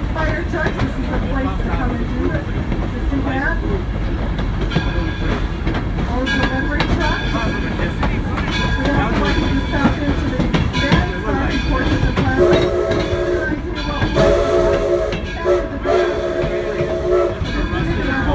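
Steam locomotive running with a steady rumble of wheels on rail. About twelve seconds in, its steam whistle blows a series of long blasts separated by short breaks, a crossing signal as the train nears a railroad crossing.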